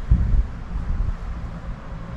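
Wind buffeting the microphone: an uneven low rumble, strongest in the first half second, then easing.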